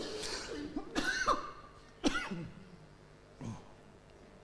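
A person's voice making a few short sounds that are not words, in three or four brief bursts about a second apart, like coughs or throat-clearing.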